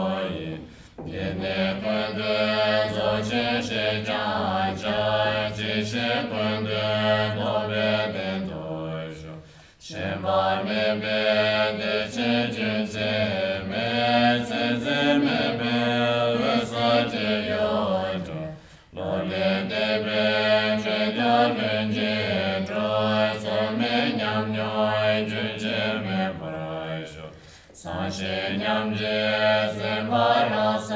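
Tibetan Buddhist prayer chanted in a deep, slow, steady melody, line by line, with a short breath pause roughly every nine seconds.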